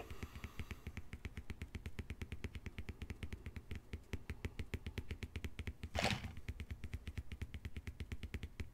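Rapid, even tapping on a tabletop, about ten light taps a second, with a short louder rush of noise about six seconds in.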